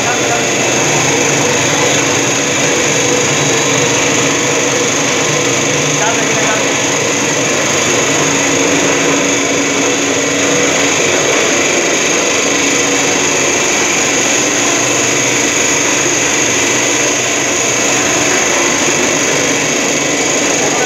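Puffed-rice (muri) making machine running: a steady mechanical hum with a high hiss over it.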